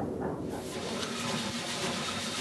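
Steady hiss and rumble inside the cab of oil-fired steam locomotive No. 18 as it works slowly up a steep grade, the hiss setting in about half a second in.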